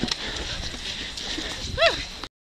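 Outdoor crowd background with faint voices, and a short high-pitched whoop from a person that rises and falls in pitch near the end.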